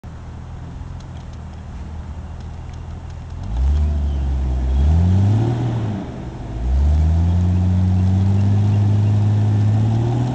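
Jeep Cherokee engine idling, then revving hard twice, the second rev held high, as it pulls against a tow strap with its tyres spinning and digging into loose dirt.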